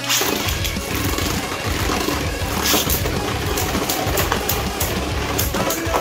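Background music throughout.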